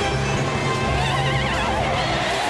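Music with a horse-like whinny laid over it: a quavering call that starts about a second in and falls in pitch at the end.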